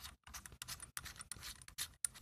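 Faint scraping and small clicks as the threaded head of an aluminium head torch is unscrewed by hand.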